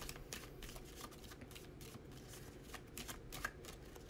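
A Starseed Oracle card deck being shuffled by hand: faint, irregular soft clicks of the cards sliding against each other.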